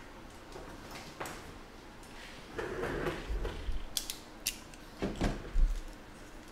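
Objects being handled on a tabletop out of view. A rustle starts about two and a half seconds in and lasts about a second, a few sharp clicks follow, and a low knock near the end is the loudest sound.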